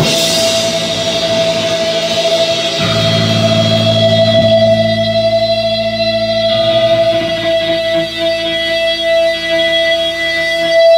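Loud live electric guitars: one high note held steadily throughout over sustained, ringing low chords, with little drumming.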